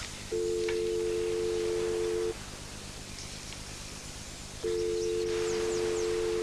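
Telephone ringback tone heard on the caller's handset: two steady two-note rings of about two seconds each, a couple of seconds apart, the sign that the called line is ringing and not yet answered.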